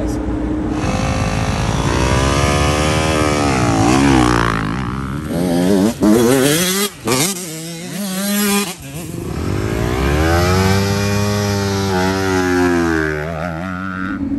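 Motocross dirt bike engines revving, their pitch climbing and dropping as the riders accelerate and back off, with a few sudden breaks around the middle.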